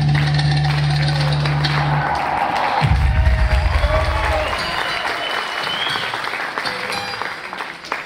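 Afro-Ecuadorian bomba dance music with a strong bass line, ending about two to three seconds in, followed by audience applause with some cheering that thins out near the end.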